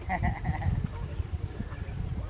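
A person laughing in short repeated pulses through the first second or so, over a low rumble of wind on the microphone.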